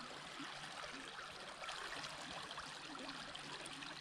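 Faint, steady trickling and running of a small creek carrying spring snowmelt.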